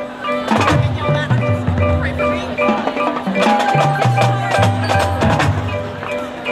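High school marching band playing its field show: brass over a low bass line that steps down in pitch, with mallet keyboards from the front ensemble and sharp percussion hits about half a second in and several more in the second half.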